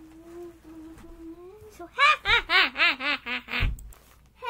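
A child laughing hard: a quick run of about seven loud, evenly spaced bursts starting about two seconds in, after a quieter stretch of the child's voice.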